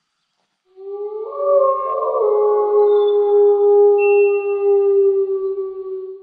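Outro sound sting: several long held tones come in one after another under a second in, layering into a sustained chord that starts to fade near the end.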